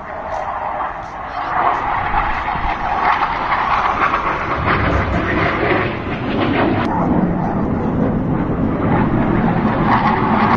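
Jet aircraft flying overhead at an air show: a loud, continuous jet-engine rumble that shifts lower about six seconds in.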